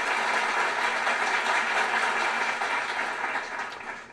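Recorded applause played as a sound effect: a steady wash of clapping that fades out near the end.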